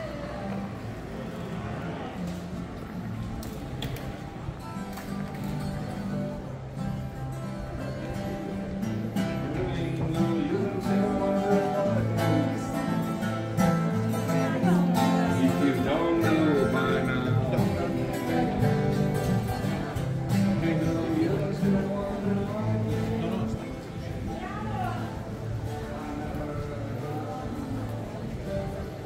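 A street musician playing an acoustic guitar, with a voice singing along. It grows louder as it is approached, peaks mid-way, then drops off after a little over 20 seconds as it is passed.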